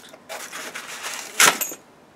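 Styrofoam packing being worked out of a cardboard box: scraping and rustling, then a sharp, loud snap about one and a half seconds in, followed by a brief squeak.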